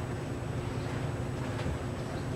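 Steady background hiss and low hum of room noise, with a faint steady tone running under it; no distinct event.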